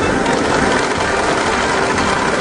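Pachinko parlour din: masses of steel balls clattering through the machines in a dense, steady rattle that starts abruptly.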